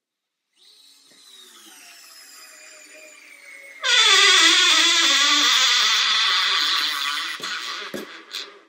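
DeWalt DCF680 8-volt gyroscopic screwdriver driving a screw into a wooden beam under load. Its motor whines faintly at first. About four seconds in it gets much louder and drops in pitch as the screw bites, then trails off near the end as the clutch slips out.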